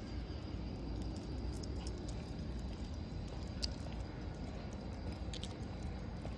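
Steady low outdoor rumble on a carried phone microphone, with a faint, steady high chirring of insects over it. Two light clicks come about three and a half and five seconds in.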